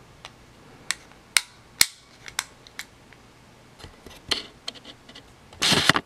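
Small sharp clicks and taps of a plastic camcorder housing and circuit board being handled and pulled apart, about half a dozen spread through the first few seconds. A louder, brief scraping rustle comes just before the end as the board is lifted out.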